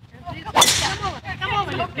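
Golf driver striking a teed-up ball in a full swing: one sharp crack about half a second in.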